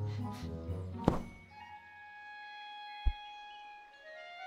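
Orchestral film score with long held notes, broken by a sharp, loud thud about a second in and a short, low thump near the end.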